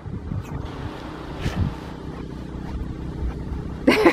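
Low, steady rumble of wind buffeting the microphone outdoors, with a couple of faint short sounds about half a second and a second and a half in.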